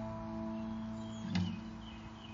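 Acoustic guitar and lap-played slide guitar letting a chord ring out and fade in a pause in the playing, with one brief sharp attack about a second and a half in.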